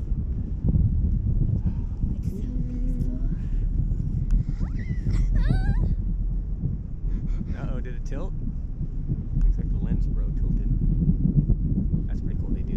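Wind buffeting the microphone, a steady low rumble throughout. Short voiced exclamations with gliding pitch come about five and eight seconds in.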